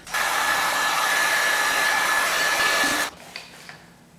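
Electric heat gun running: a steady rush of blown air with a thin high whine. It switches off abruptly about three seconds in.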